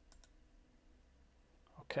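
Computer mouse double-clicked to open a file: two quick, faint clicks about a tenth of a second apart, just after the start.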